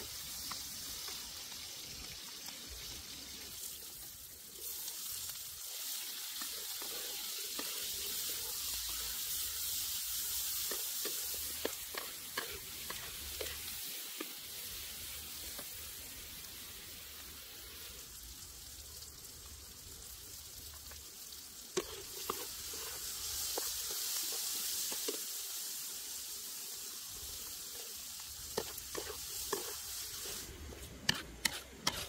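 Food sizzling in a hot steel wok over a wood fire as garlic, chilies and vegetables are stir-fried, the sizzle swelling louder twice. Scattered light clicks and scrapes of the spatula stirring against the pan.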